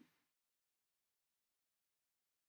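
Near silence: a very faint room tone that cuts off a fraction of a second in, leaving complete digital silence.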